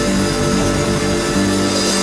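A rock band playing live, holding steady chords.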